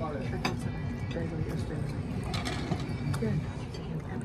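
Biting into and chewing a burger close to the microphone, with a few sharp clicks, over a low murmur of voices in the dining room.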